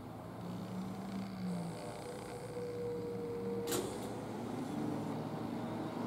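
Motor vehicle approaching on the street, its engine hum growing steadily louder. A single sharp click comes a little past halfway.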